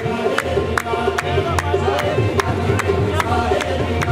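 Qawwali music: a harmonium holding steady notes over drum accompaniment, with sharp claps keeping an even beat of about two and a half a second.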